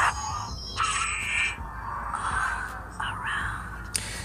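Dolby Audio demo clip playing through a ZTE Blade X Max smartphone's rear-facing speaker at raised volume: shifting swishing and sweeping sound effects, with a quick falling-then-rising sweep near the end.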